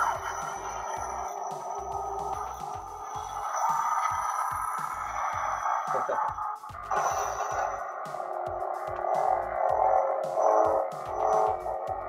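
Electronic hum from a double-bladed ArtSaber lightsaber's built-in sound board as its sound presets are cycled. The sound switches to a different effect about seven seconds in.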